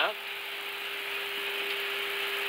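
Steady hiss with a constant low hum in an Airbus A321 cockpit, the background noise of the flight deck's audio.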